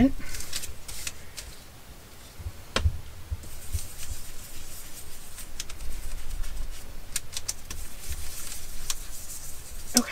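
Ink blending tool dabbed and rubbed over a paper stencil: soft, uneven scrubbing and rustling of paper with small clicks, and one sharper tap about three seconds in.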